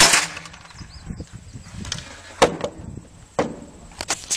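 A single .22 rimfire shot from a Remington Mohawk 10C (Nylon 77) semi-automatic rifle right at the start, its action cycling and throwing out the spent case. Two shorter sharp knocks follow, about two and a half seconds in and a second later, the second fainter.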